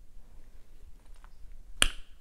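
Lip gloss being put on with a wand applicator: a few faint sticky clicks, then one sharp click just before the end.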